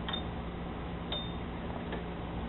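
Two light metal clicks about a second apart, each with a brief high ring, and a fainter click near the end, as hands work on the throttle body and its bolts, over a steady low hum.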